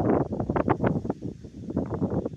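Wind buffeting a phone's microphone in ragged, uneven gusts.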